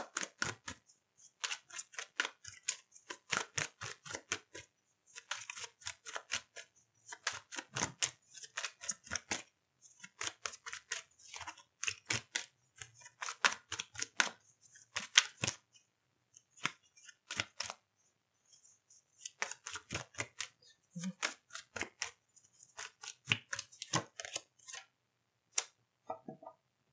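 A deck of tarot cards being shuffled by hand: bursts of rapid crisp clicks as the cards run together, with a brief pause about two-thirds of the way through.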